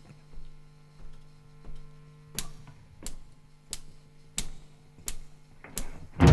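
Steady count-in clicks, about three every two seconds, the first few faint and the rest louder, giving the tempo before the band comes in. A low, steady amplifier hum sits underneath.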